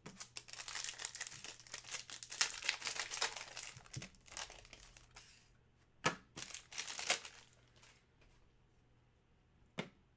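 A trading card pack wrapper torn open and crinkled by hand, a dense crackling rustle for about five seconds. Then two short rustles as the cards are handled, and a small click near the end.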